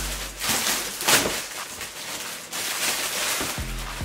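Background music with a steady bass line, over crinkling and rustling from a plastic mailing bag being torn open and a shoebox pulled out. The loudest rustle comes about a second in.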